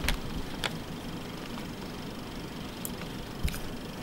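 Steady low background noise with a few faint clicks.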